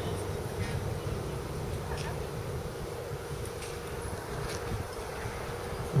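Quiet outdoor background: a low rumble with a faint steady hum running through it, and a couple of faint ticks.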